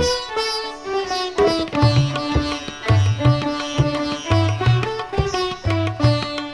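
A sitar plays a Sranan Tongo folk melody with violin, over low tabla strokes that keep a steady beat. This is Surinamese sitar-and-violin fusion from a 1974 LP recording.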